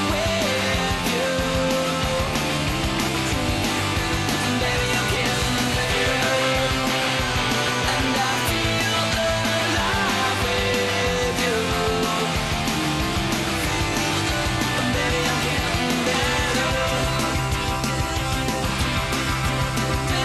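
Rock music with guitar, loud and continuous.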